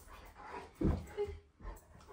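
A Newfoundland dog makes brief soft vocal sounds, the clearest just under a second in and a fainter one shortly after.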